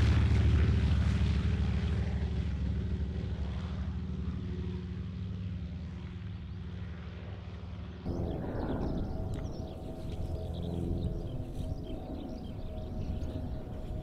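Restored Mitsubishi A6M Zero fighter's radial piston engine and propeller at full power on its takeoff run, loud at first and slowly fading as the plane pulls away and climbs. About eight seconds in, the sound cuts abruptly to a quieter, steady drone of the plane in flight.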